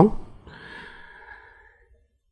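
A faint breath drawn by a speaker close to a handheld microphone, fading out shortly before the end into near silence.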